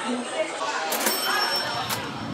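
A bright cash-register-style "ching" sound effect: a sharp hit about a second in, then a high bell ringing for nearly a second, over the murmur of restaurant chatter.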